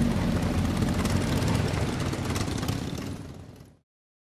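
Motorbike engines running, a steady low rumble that fades away over the last second and a half and stops just before the end.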